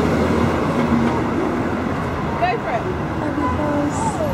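Steady noise of road traffic passing close by on a busy city street, with faint voices about two and a half seconds in.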